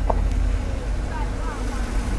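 Steady low background rumble, with no clear event standing out.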